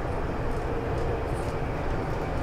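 Cabin running noise of a Namo Bharat (RapidX) RRTS train travelling at about 140 km/h: a steady low rumble with a faint steady hum.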